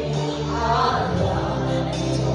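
Group worship singing: many voices singing together over held, sustained instrumental chords and bass notes.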